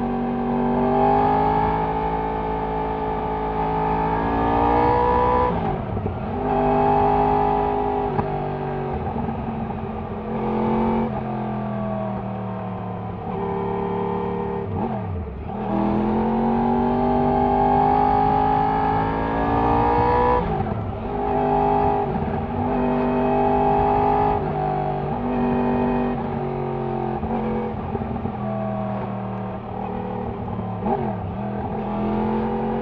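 Yamaha R1 inline-four engine running through a Scorpion decat mid-pipe, heard from the rider's seat while riding. The revs climb and fall several times as the throttle is opened and rolled off.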